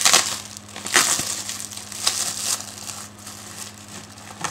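A mailed subscription package being torn open by hand, its packaging crinkling. There are a few loud rips and rustles in the first two and a half seconds, then quieter handling.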